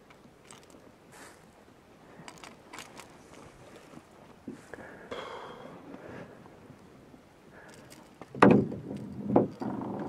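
Faint clicks and scrapes of fishing gear being handled in a canoe while a hooked walleye is unhooked and lifted, with a louder burst of sound about eight and a half seconds in.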